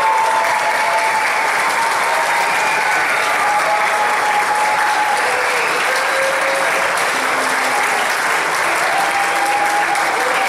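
Audience applauding steadily in a hall as a barbershop quartet walks on, with a few drawn-out whistles sounding over the clapping.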